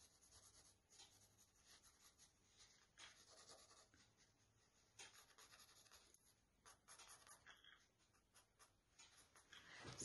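Faint scratching of a graphite pencil shading on textured watercolor paper, in short irregular strokes.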